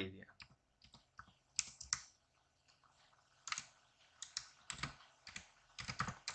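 Computer keyboard keys being typed in scattered short runs: a few keystrokes around two seconds in, then a quicker string of them over the last two and a half seconds.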